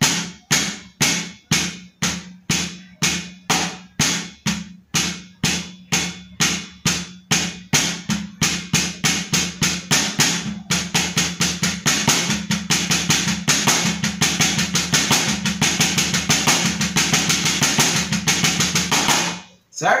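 Drumsticks striking a practice pad in a right, left, right-right, left, right-right, left sticking exercise. The strokes start a few a second and gradually speed up into a fast, dense roll that stops shortly before the end.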